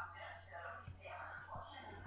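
Faint voices in the background, over a steady low hum, with a few soft low thumps.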